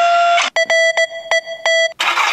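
An iPhone battery app's 'Morse Code' full-charge alert sound playing from the phone's speaker: a run of short and long electronic beeps in a Morse-code pattern. It follows the end of a steady synthetic tone less than half a second in.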